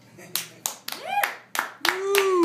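Sparse applause from a small audience: about six separate hand claps spread out rather than a continuous patter, with a voice calling out twice in an arching, rise-and-fall pitch, once about a second in and again near the end.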